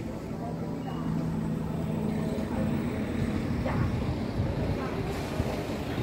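Street traffic: a motor vehicle's steady engine hum for the first couple of seconds, then a louder rush of engine and tyre noise as a car passes, loudest around the middle.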